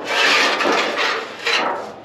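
An old metal roofing sheet scraping across the other sheets as it is dragged and lifted off a stack. A harsh, continuous rasp with a second swell about a second and a half in.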